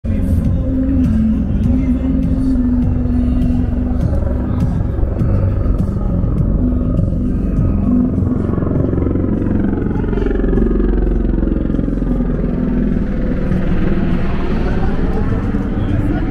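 Busy city street ambience: a steady traffic rumble with music and voices mixed in.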